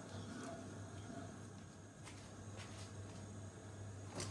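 Faint stirring of tomato sauce in a pan with a wooden spatula: a few soft clicks of the spatula against the pan over a low steady hum.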